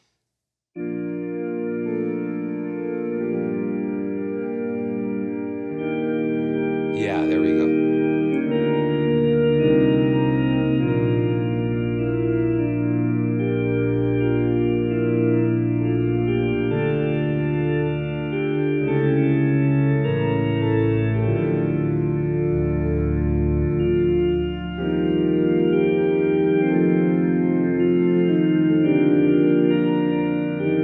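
Sampled vintage Thomas console organ (Soundiron Sandy Creek Organ) playing sustained full chords through a slow-speed Leslie rotary speaker, the chords changing every second or two. It starts about a second in.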